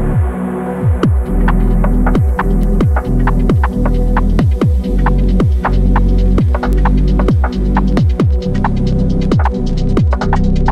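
Electronic chill music in a future-garage or wave style: deep bass kick drums that fall in pitch repeat steadily under a held synth tone. Crisp hi-hat ticks come in about a second in and grow busier near the end.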